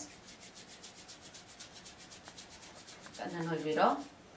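Two hands rubbed vigorously palm against palm, a soft swishing of skin on skin in a quick, even rhythm of strokes that stops about three seconds in.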